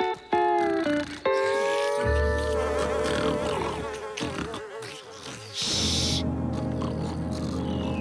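Cartoon flies buzzing, over a short music cue with held notes at the start.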